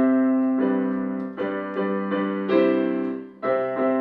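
Digital piano playing slow, held chords, a new chord struck roughly once a second, with a brief drop in loudness just before the last chord near the end.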